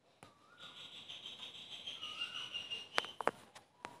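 Faint short rising chirps repeating about every two seconds, like a bird calling, with a few sharp clicks about three seconds in.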